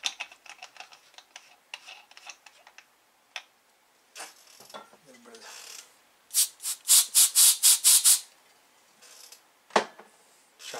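Aerosol spray can of isopropyl alcohol, fired through its straw nozzle into a floppy drive's head mechanism in a quick run of seven or eight short hissing bursts, starting a little over six seconds in. Before it comes a patter of small handling clicks, and near the end a single knock.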